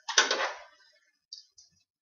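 Metal canning rings clinking against glass canning jars as they are set on and threaded: one louder clatter about a quarter second in, then two small clicks past the middle.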